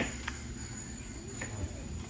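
A few sharp knife taps on a plastic cutting board while food is cut, loudest right at the start with two more later, over a thin steady high-pitched tone.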